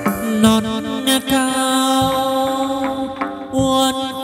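Live chầu văn ritual music: one long held melodic note, with a few drum strokes.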